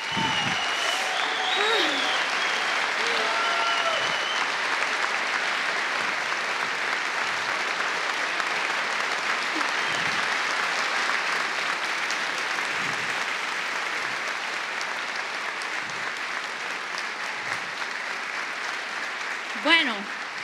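Large audience applauding steadily, with a few whoops and shouts in the first few seconds; the clapping slowly dies down toward the end.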